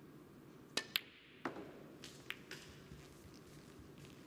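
Snooker cue striking the cue ball with a sharp click, then a second click a fraction of a second later as the cue ball hits the brown. Several softer knocks follow as the balls run into the cushions and the brown drops into a pocket.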